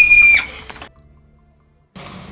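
A long, steady, very high-pitched shriek over a short music sting cuts off about half a second in. Then the sound drops away to almost nothing for about a second before faint outdoor background noise begins at the end.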